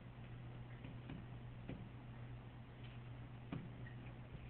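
Faint, scattered taps of a stylus on a tablet screen while handwriting, with a few sharper clicks, over a steady low electrical hum.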